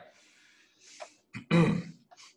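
A man clearing his throat once, a short rough burst near the end, after a soft breath.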